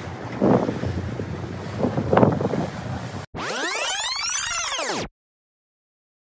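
Wind buffeting the microphone and sea water rushing past the hull of a boat under way, with two louder surges about half a second and two seconds in. After a sudden cut, a swooshing transition sound effect of sweeping, arching tones plays for under two seconds and ends abruptly in silence.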